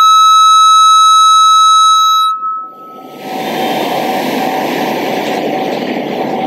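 Loud steady high-pitched whistle of sound-system microphone feedback, one held tone that breaks in on the talk and fades out after about two and a half seconds. After it, a steady rushing noise with a faint low hum.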